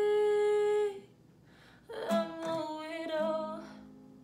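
A woman singing over an acoustic guitar: a long held note that stops about a second in, then after a short pause a second wavering phrase that fades out near the end.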